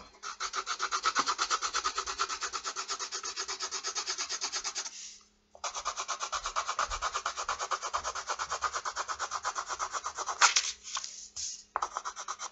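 Green colored pencil scratching on paper in rapid, even back-and-forth strokes, about eight a second, drawing grass. The strokes break off briefly about five seconds in, and two sharper, louder knocks come near the end.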